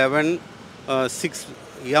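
A man speaking in short, broken phrases, with steady background street noise filling the pauses.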